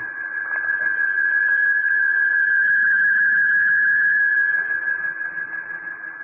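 A single held, eerie high tone swells to its loudest in the middle and fades toward the end: a radio-drama sound cue for a spirit coming through at a séance.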